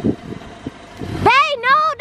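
Mitsubishi Eclipse coupe pulling away from the curb, its engine a low rumble. A little past a second in, a loud, high-pitched, wavering sound starts over it.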